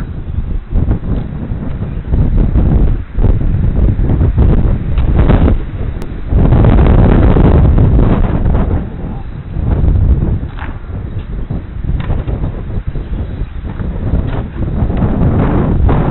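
Wind buffeting the microphone: a gusty rumble, loudest a few seconds in, then easing and rising again.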